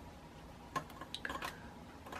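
Faint handling sounds of fly tying at the vise: a quiet room with a short cluster of small clicks a little under a second in, as hands work thread and flash on the hook.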